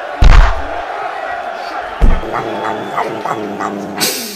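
Two heavy thumps about two seconds apart from a man and a small child play-wrestling on a rug-covered floor, over steady background voices and noise.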